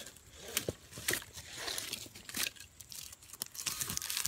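Rigging rope being unwound from around a log: scraping and rustling of rope over bark with scattered small knocks and clicks.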